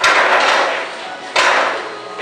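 Pool balls clacking: two sharp hits about a second and a half apart, each ringing briefly.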